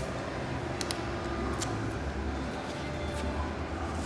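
Steady low background rumble, with a few short clicks and crackles as hands work metallic tape and fiberglass duct insulation wrapped around a duct, two close together about a second in and one more shortly after.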